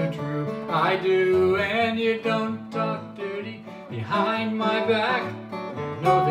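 Acoustic guitar strummed and picked in a folk-song accompaniment, with a man singing over it in two short phrases.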